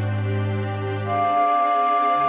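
Two flutes and a string ensemble playing a very slow D-minor passage in sustained chords, played back by notation software from the score. A low bass note is held, then stops about a second and a half in, while a high note enters about a second in and is held.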